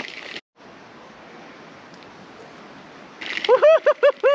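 Steady, even rush of flowing river water, broken by a brief dropout about half a second in.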